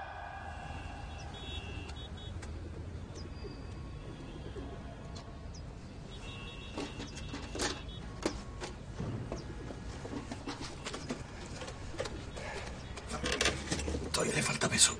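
Faint bird chirps over a low steady hum, with a few sharp clicks or knocks in the second half.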